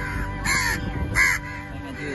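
Two harsh caws from house crows, each about a quarter-second long and the second a bit louder, roughly three-quarters of a second apart.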